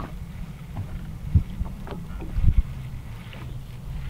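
Wind buffeting the microphone on an open boat on the lake: a steady low rumble with a few short low thumps.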